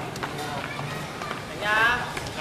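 A few faint knocks or scuffs, then a short, high-pitched shout from a person near the end.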